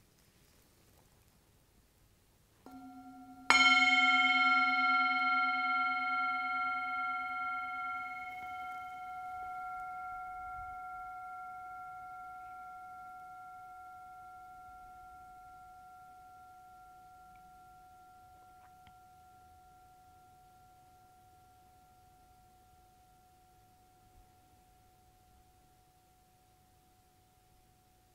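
A meditation singing bowl sounds softly about three seconds in, then is struck firmly a moment later. It rings with several steady tones and a slow wavering, fading out over about twenty seconds. The strike marks the start of a silent meditation interval.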